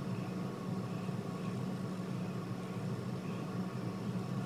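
Steady low hum with a faint hiss, unchanging throughout: background room noise with no other events.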